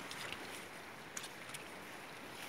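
Small waves lapping at a lake shore with light wind, a steady wash of noise, broken by a few short sharp clicks.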